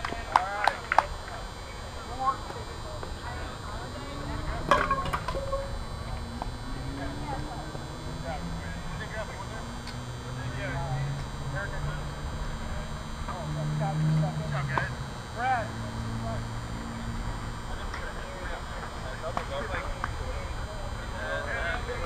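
Distant chatter and calls from players across a softball field, with a few sharp knocks in the first second and another about five seconds in. A low droning hum comes in midway, rising in pitch and then holding steady.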